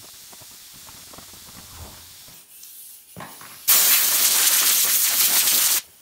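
Soft rubbing of a cloth towel over a leather car seat, then a loud, steady pressurised spray hiss lasting about two seconds that cuts off sharply near the end.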